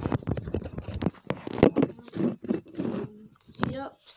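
Handling noise from a phone's microphone: scratching, rubbing and short knocks as the phone is gripped and brushed against clothing, with brief bits of a voice.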